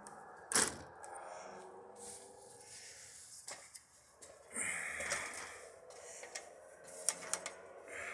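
Metal ladder being set against an RV and climbed: a sharp knock about half a second in, then scraping, rattling and a few clicks from the ladder and footsteps on its rungs.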